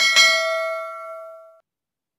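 Notification-bell chime sound effect for a subscribe-button animation: a bright ding that rings and fades away over about a second and a half.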